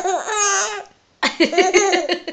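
A baby laughing in two bouts, high-pitched and breathy, with a short pause between them.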